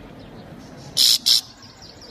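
Goldfinch singing: quick, faint twittering notes, broken about a second in by two loud harsh bursts in quick succession.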